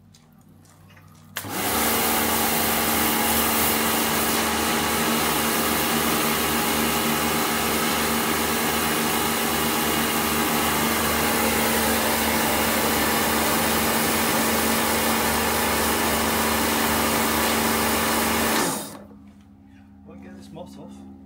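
Pressure washer starting up about a second and a half in, its motor and pump running steadily with a constant hum under the hiss of the water jet, then winding down shortly before the end.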